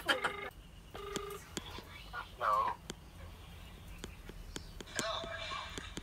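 Two short electronic beeps from a mobile phone as a call is being placed, followed by a brief voice sound about two and a half seconds in and faint talk near the end.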